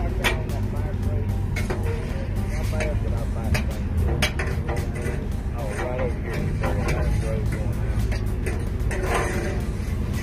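Steady low rumble of an idling engine, with faint, indistinct voices and a few sharp clicks over it.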